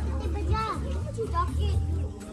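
Children's voices calling and chattering as they play, in short bursts of high-pitched vocalising, over a steady low hum.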